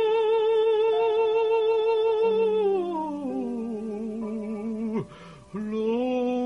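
A male cantor singing a long high note with wide vibrato for nearly three seconds, then sliding down to a lower note that he also holds with vibrato. The voice breaks off briefly near the end and then takes up a new note. Faint steady accompanying notes sound beneath the voice.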